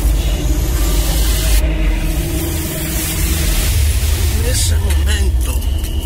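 Radio-drama sound effect of a fire flaring up: a loud, deep rumble with a rushing hiss over it, with wavering voices rising under it near the end.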